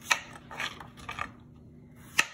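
Santoku knife cutting through a raw yellow squash on a plastic cutting board. There is a sharp tap just after the start, then a few short, crisp cutting crunches.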